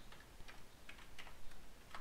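Faint keystrokes on a computer keyboard: about four separate taps at an uneven pace while a password is typed.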